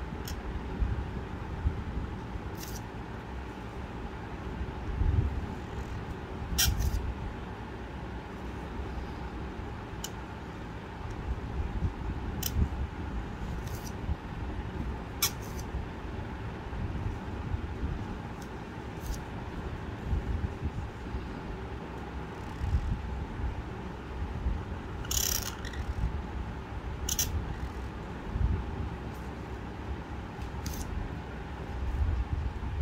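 Qalam (cut calligraphy pen) nib scratching across paper in a handful of short, sharp strokes as ink letters are drawn, over a steady low background rumble.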